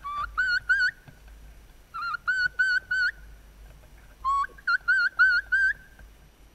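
Turkey kee-kee calls: three runs of short, high whistled notes, each note rising in pitch, three to five notes to a run with pauses between.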